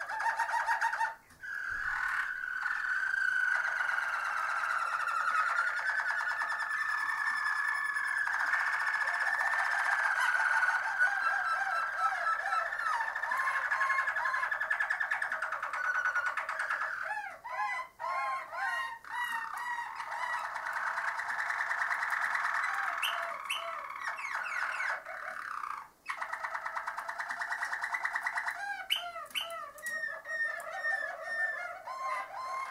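Harzer Roller canary singing its low, rolling song, a near-continuous run of rolls and trills. There are short breaks about a second in and again near the end, and bursts of fast, repeated looping notes partway through and at the close.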